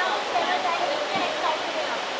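Crowd chatter: many voices talking over one another, none standing out, over a steady hiss of background noise.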